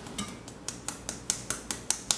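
A fine-mesh sieve of flour being shaken and tapped over a stainless steel bowl, giving a steady run of light, sharp ticks about five a second as the flour sifts through.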